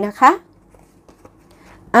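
A woman's voice briefly, then faint handling of tarot cards: a card drawn from the deck and laid down on the cloth.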